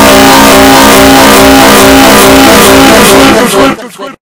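Very loud, distorted audio from a cartoon clip stacked on itself many times over, fused into one dense droning mass of held tones over a harsh hiss. Near the end it breaks up and cuts out.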